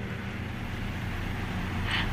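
Steady background hum and hiss with a few faint low steady tones, even throughout.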